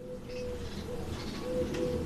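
A pigeon cooing, low hollow notes repeated in short phrases with a pair of quicker coos about one and a half seconds in, while small birds chirp faintly higher up.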